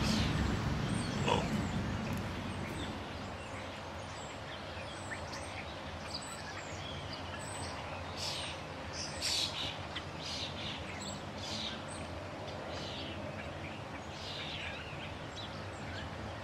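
Small birds chirping in short, high, falling calls, scattered through the second half, over a steady background hiss that is louder and fades away over the first few seconds.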